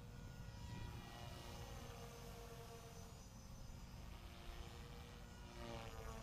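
Align T-Rex 450L Dominator electric RC helicopter in flight at a distance, heard as a faint whine of its brushless motor and rotors. The rotor speed is held at 3,500 rpm by the governor. The pitch glides down through the middle and climbs again near the end as the helicopter moves about.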